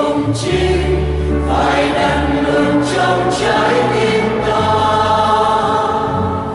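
Mixed choir of men and women singing a Vietnamese Catholic hymn in parts over sustained low bass notes.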